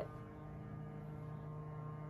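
A steady low hum with a few faint held tones.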